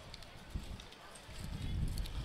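Faint outdoor crowd ambience with a low rumbling that grows a little louder in the second half.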